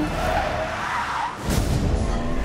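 Car tyres squealing in a skid, a wavering squeal lasting about a second, from a film trailer's soundtrack. About one and a half seconds in, a heavier rumble of car noise comes in.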